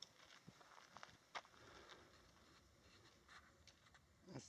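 Near silence with faint footsteps on a rocky gravel trail, a few soft scattered clicks, the clearest about one and a half seconds in.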